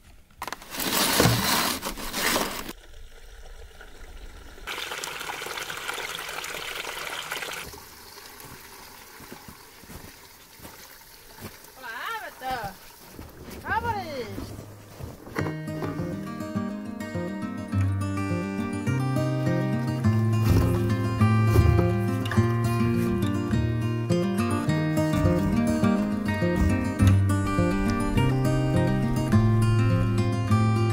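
Gasoline being poured into a snowmobile's fuel tank: a steady, even pouring hiss in the first half. From about halfway through, guitar music takes over.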